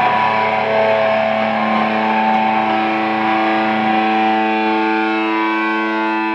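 Amplified electric guitars holding one sustained chord with no drums, ringing on steadily, with further notes swelling in about two seconds in: the closing held chord of a live rock song.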